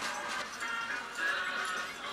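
Music with short, high, wavering notes repeating over a steady background haze.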